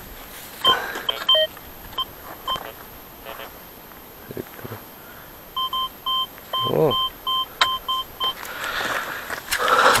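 Fortuna Pro2 metal detector giving short, identical mid-pitched beeps as its coil is swept over a shallow buried target: a few scattered beeps early, then a run of about three beeps a second from about halfway until past eight seconds, signalling a coin lying near the surface.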